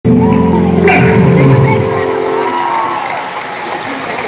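Live concert music: a loud, sustained low chord that fades after about two and a half seconds, with a crowd cheering and whooping over it.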